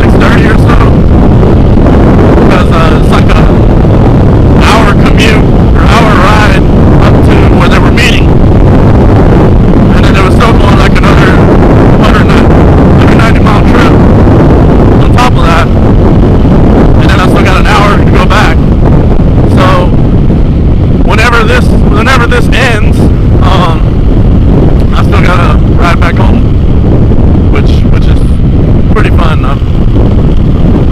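Loud, near-constant wind buffeting on a helmet-mounted microphone at road speed. Beneath it runs the Yamaha WR450F dirt bike's single-cylinder four-stroke engine.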